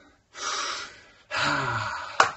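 A man's two loud, breathy huffs of breath: a short hiss of air, then a longer one with a little voice in it.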